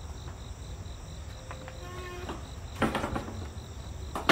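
Insects chirping in an even pulsing rhythm over a steady low rumble, with a loud clatter about three quarters of the way through.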